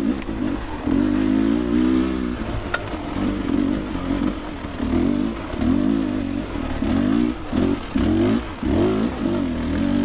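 Dirt bike engine running under throttle on a rocky climb. It is held on steadily at first, then blipped on and off in short bursts, about one a second, through the second half.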